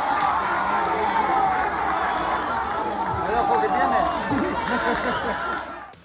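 Football spectators shouting and talking over one another in the stands during play. The crowd sound fades out near the end.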